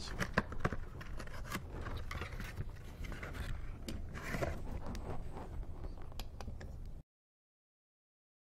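Cardboard oil-filter carton being opened and the spin-on filter slid out: scraping and rustling with small irregular knocks. The sound cuts off abruptly about seven seconds in.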